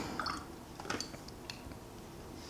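A watercolor brush picking up paint from a palette of paint pans: a few faint wet dabs and small clicks.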